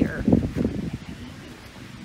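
Outdoor garden ambience with light wind on the microphone, opening with a few low thumps in the first half second, then a low, even background noise.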